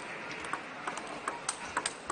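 Table tennis rally: the ball clicks sharply off the players' bats and the table, about half a dozen hits in quick succession that come closer together as the rally speeds up.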